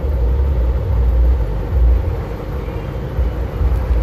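Low, steady rumble of a bus's engine and running gear, heard from inside the driver's cab as it pulls slowly into a turn.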